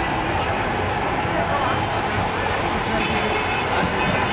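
Steady noise of a busy road junction: vehicle engines and traffic, with people talking nearby.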